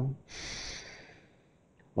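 A man's long, audible in-breath, lasting under a second and fading away.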